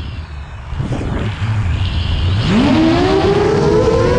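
Brushless motors and propellers of a 7-inch FPV quadcopter (T-Motor F40 Pro II 1600kv), heard through the onboard camera in strong wind. A low rumble of wind on the microphone while the throttle is low, then about two and a half seconds in the motors spool up with a rising whine that stays high.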